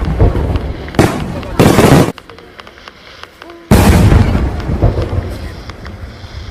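Fireworks bangs: a loud bang about a second in, another just after it that cuts off abruptly, then a big bang a little before four seconds that rumbles and crackles away.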